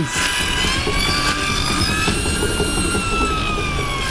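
Horse-powered circular saw running with a steady high whine that slowly sags and rises in pitch as a board is fed into the blade, over a continuous low rumbling clatter from the geared drive.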